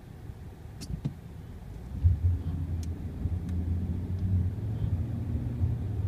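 Car engine and road noise heard from inside the cabin: a low steady drone that grows louder about two seconds in, with a few faint clicks.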